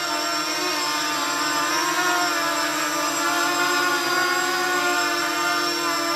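Flying 3D X6 quadcopter on 5040 propellers hovering: its motors and props give a steady whine whose pitch wavers slightly.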